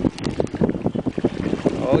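Wind buffeting the microphone over choppy water that slaps at a boat's side, with irregular sharp knocks and clicks throughout.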